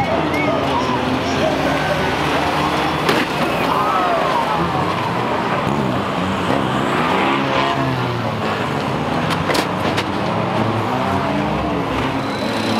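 Engines of several racing banger vans and small cars running together, their revs rising and falling as they pass, with a sharp knock about three seconds in.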